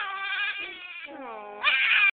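A young infant crying in long wails, one drawn-out cry slowly falling in pitch, then a louder cry breaking out near the end.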